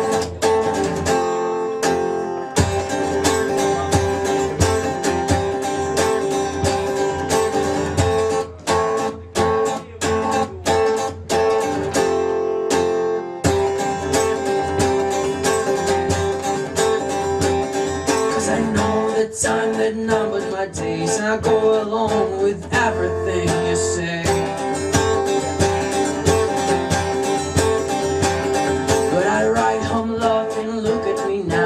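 Acoustic guitar strummed in a steady rhythm, chords ringing on between the strokes.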